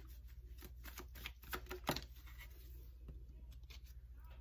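Tarot deck being shuffled by hand: a run of quick, light card clicks and flicks that thins out after about two seconds, over a steady low hum.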